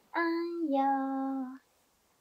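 A woman singing a baby-massage song, ending the line 'あんよ〜' (legs) on two held notes: a short one, then a lower one drawn out for about a second.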